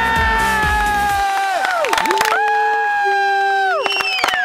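Children on the field cheering a goal with long, drawn-out shouts, two main cries each held about a second and a half and falling away at the end. A pop song with a steady beat plays under the first second and then stops.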